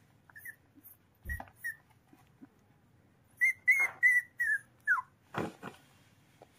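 A young puppy whimpering in short, high-pitched squeaks: a few scattered ones at first, then a quick run of about five, the last sliding down in pitch. It is distress while ticks are being picked from its ear.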